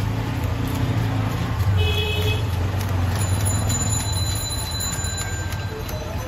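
A steady low motor drone, with faint scraping and ticking from a knife working scales off a fish on a wooden block.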